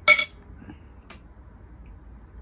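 A metal spoon clinks once against a glass serving bowl, a bright, short ringing chink, followed by a faint tick about a second later.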